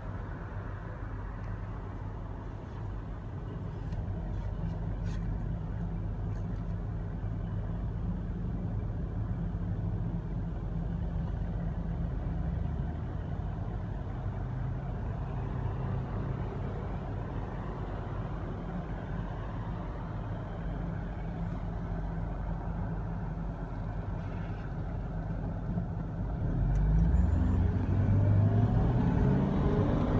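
Long Island Rail Road M7 electric train on the elevated tracks, with street traffic underneath. Most of the time there is a steady low hum. About four seconds before the end it gets louder, with a whine rising in pitch as the train's traction motors accelerate.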